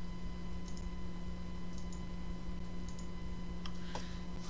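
A few faint computer mouse clicks, roughly one a second, as CV points are placed on a curve, over a steady low electrical hum.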